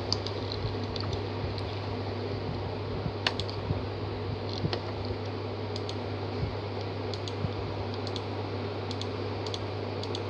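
Scattered keystrokes on a chiclet-style computer keyboard, a few irregular key clicks at a time, over a steady low hum.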